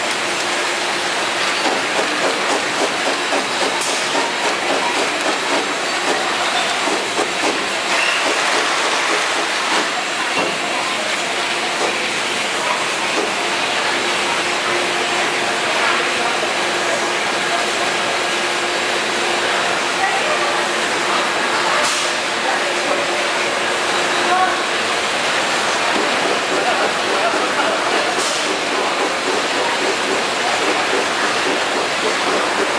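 Automatic bottle capping and labeling line running: conveyor and machinery clattering steadily as plastic bottles rattle along the line, with a faint steady hum through much of it.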